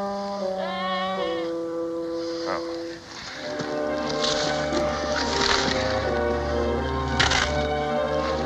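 Orchestral film score playing held, slow-moving notes. About a second in comes a short, quavering sheep bleat. From about halfway, dry bramble branches crackle and rustle as they are pulled apart.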